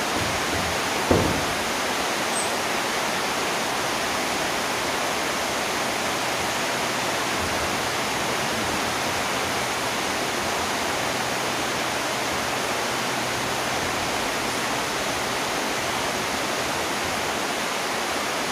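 Steady, even hiss of background noise with no change in level, broken by one brief knock about a second in.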